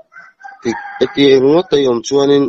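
A man's voice imitating a rooster crowing: a drawn-out, rising-then-falling call in several segments, starting about halfway in.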